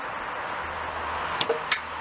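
Two sharp metallic clicks about a second and a half in, as the shotgun's action is opened and the spent shell is pulled out; it comes out easily, with no sticking. Steady outdoor background hiss underneath.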